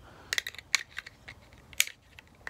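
A handful of sharp, short clicks and scrapes from a small metal pick prying at the plastic back cover of an old telephone rotary dial, the loudest near the end.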